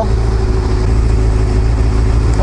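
Honda CBR600F4i sport bike's inline-four engine idling steadily while the bike stands still.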